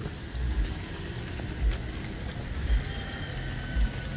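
Cars passing slowly on a wet road: engines running and tyres hissing on the wet surface, with irregular low rumbles.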